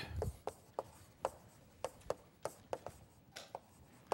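Chalk writing on a blackboard: a string of sharp, irregular clicks as the chalk strikes the board with each stroke of a word.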